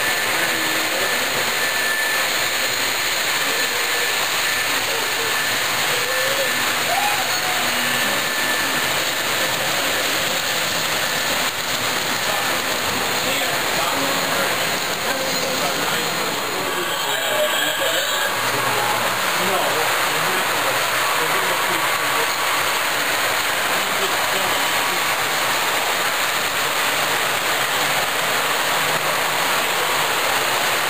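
O scale model trains running on the layout, a steady, loud noisy wash without breaks, with a crowd talking faintly underneath.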